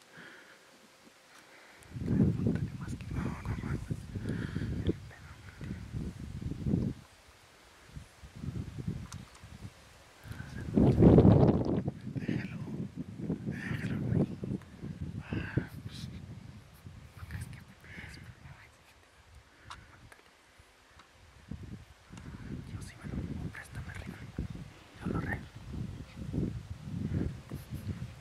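People whispering close to the microphone, in short hushed bursts, over low rumbling noise on the microphone that is loudest about eleven seconds in.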